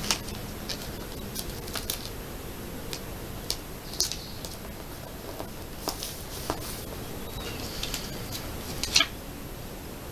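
Light paper rustling and scattered soft taps as stickers are handled and pressed onto the pages of a paper sticker album, with a louder crinkle near the end.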